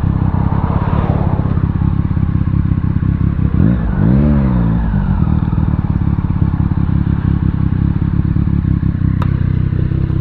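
Motorcycle engine running steadily at low revs, with a brief rise and fall in pitch about four seconds in and a sharp click near the end.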